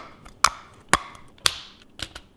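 Sharp clicks, about two a second, evenly spaced.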